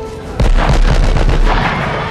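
A large explosion: a sudden loud blast about half a second in, followed by a continuing deep rumble.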